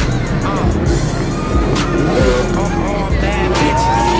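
Loud street din of music, voices and motor vehicle engines mixed together, with a rising whine beginning near the end.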